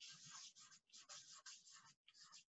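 Marker pen writing on card: a faint run of short scratchy strokes as letters are drawn, one after another.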